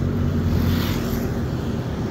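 A steady low hum, like a motor or engine running.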